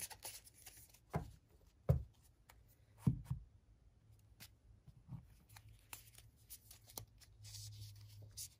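A deck of oracle cards being handled on a cloth-covered table: a few soft taps and card rustles, the loudest about two and three seconds in, then fainter clicks.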